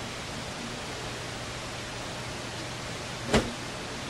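Steady background hiss with a faint low hum in a pause between speech. One short knock comes a little over three seconds in.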